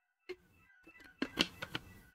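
The fading reverb-and-delay tail of a synth pluck (Serum 'Ether Pluck' through Valhalla Supermassive) rings on as faint, steady, high tones. Over it comes an irregular run of sharp clicks and knocks, loudest a little past the middle.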